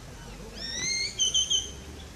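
A bird calling outdoors: one rising whistled note about half a second in, followed by three short quick notes.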